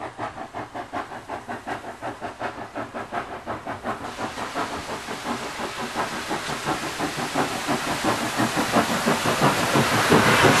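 NSWGR C36 class 4-6-0 steam locomotive 3642 working toward the listener, its exhaust beating steadily at about three beats a second. It grows steadily louder as it nears, and a rush of steam hiss swells near the end as it comes alongside.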